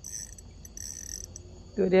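A faint night chorus of insects chirping in even, repeating pulses, with a steady high whine under it. A person starts speaking near the end.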